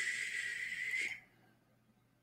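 A man's drawn-out 'chhh' hiss through his teeth, the held end of a 'ch-ch-ch-chhh' mouth noise, cutting off about a second in.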